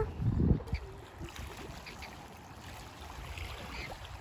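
Faint outdoor ambience: wind buffets the microphone briefly at the start, then a low, steady hush.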